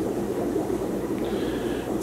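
Steady low background noise with no clear events, joined by a faint high hiss a little after a second in.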